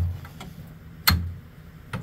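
A metal bar striking ice packed in a grain auger's intake hopper: a sharp knock with a dull thud about a second in, and another near the end.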